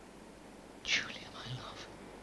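A person whispering briefly, about a second in, against a quiet background.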